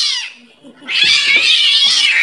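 A cat yowling loudly in long drawn-out cries. The first cry falls in pitch and dies away just after the start, and a second long cry begins about a second in.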